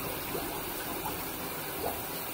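Water running steadily in a bathtub where a small dog stands in shallow water, with a couple of small splashes, one shortly after the start and one near the end.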